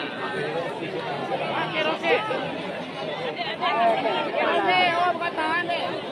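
Chatter of a large outdoor crowd: many voices talking over one another at once, with no one voice standing out.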